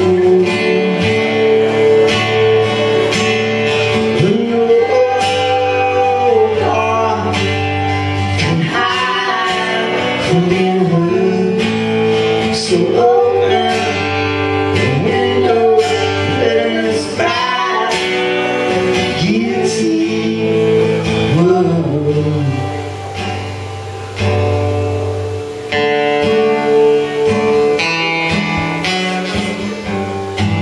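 Live acoustic guitar strumming chords with a singing voice carrying a gliding melody over it.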